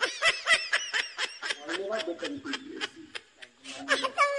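People laughing: a run of quick, high snickers in the first second or so, then lower chuckling through the second half.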